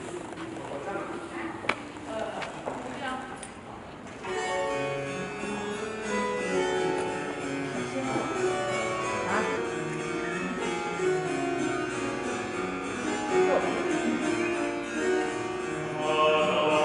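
A baroque ensemble of harpsichord and strings starts playing about four seconds in, with steady sustained notes, after a few quieter seconds that hold one sharp click.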